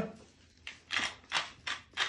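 Clear acrylic pepper mill being twisted by hand, grinding black peppercorns in a run of short grinding strokes about three a second, starting about half a second in.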